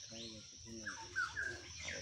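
Birds calling: two short, lower calls at the start, then a quick run of four or five chirps, each sliding in pitch.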